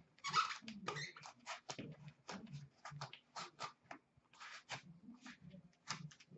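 Fingers scraping and sliding against a snug trading-card box while working its lid and contents free: a run of short, irregular scratchy rubs with light knocks, two or three a second.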